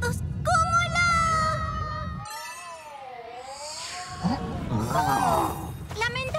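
Animated-cartoon soundtrack of music and effects: a low rumble under long wavering tones, then high gliding cries and calls. The rumble drops out for about two seconds in the middle and returns.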